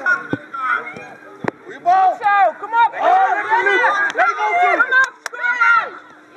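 Several high-pitched voices shouting and calling out across an outdoor youth football pitch, with a few sharp knocks in between.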